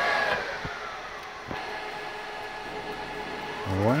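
A rack server's cooling fans whining just after power-on, falling in pitch and quietening over the first second or so, then spinning back up with a rising whine near the end.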